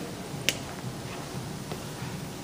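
A single sharp click about half a second in, then a fainter tick, over low room noise.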